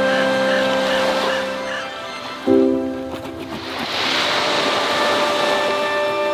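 Slow background music with sustained chords, over a rush of small waves washing up on a sandy beach that swells about halfway through.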